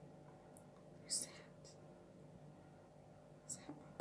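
Pet budgerigar's soft, raspy chatter: a few brief scratchy chirps, the loudest about a second in and another near the end.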